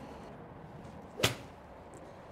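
A golf swing with a Callaway Razr X Tour iron: a brief swish, then the sharp crack of the clubface striking the ball off a hitting mat, once, about a second and a quarter in.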